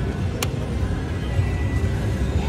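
Slot machine reels spinning to the machine's electronic music, over a steady low din of a casino floor. One sharp click about half a second in.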